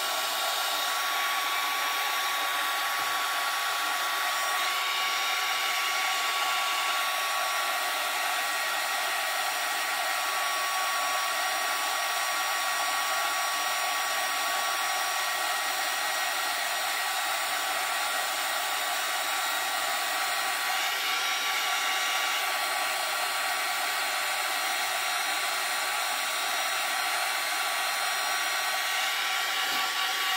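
Hand-held hair dryer blowing steadily on one setting, a rush of air with a thin constant whine, drying wet paint on a canvas.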